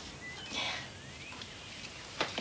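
Quiet room tone with a soft spoken "yeah" and a couple of faint, short high chirps, one of them rising in pitch.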